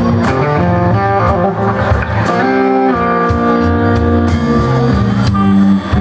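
Live electric blues band playing an instrumental passage without vocals: electric guitars, bass guitar and drums, with regular drum and cymbal hits under sustained guitar notes.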